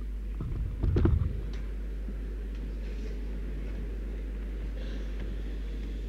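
A steady low hum, with a brief cluster of knocks and thumps about a second in. No piano is playing.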